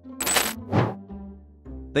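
Soft background music with a bright, high, metallic shimmering chime about a quarter second in, followed by a shorter, fainter second shimmer.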